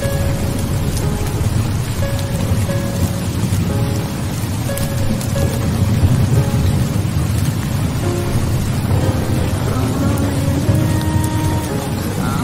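Steady heavy rain with thunder rumbling, under background music of sparse, held single notes that become busier and step upward near the end.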